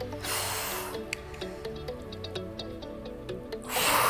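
Background workout music with a steady beat, and two forceful exhalations into a close microphone, one at the start and one near the end, the breaths of effort on dumbbell presses.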